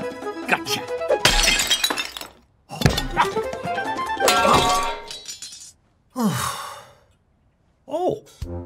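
Cartoon score music broken by sudden crash and thump sound effects, one about a second in and another near three seconds, then a short noisy burst after six seconds followed by a brief silence.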